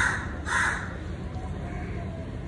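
A crow cawing twice in quick succession, two short harsh calls about half a second apart.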